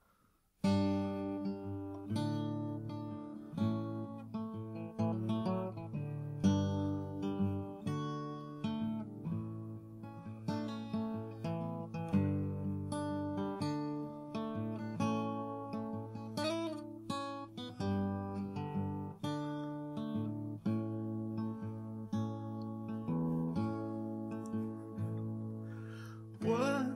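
Solo steel-string acoustic guitar, chords strummed and picked as an instrumental intro. It begins about half a second in.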